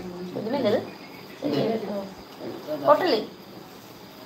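Soft, broken-up speech: three short spoken phrases with pauses between them, quieter than the talk just before and after.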